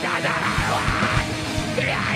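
Rock band playing loud and heavy through a club PA: distorted electric guitars, bass and drums, with the singer shouting into the microphone.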